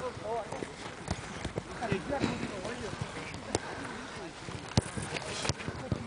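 Footballs being kicked on a grass pitch during a team warm-up: several sharp thuds at irregular intervals, with faint shouts and calls from the players.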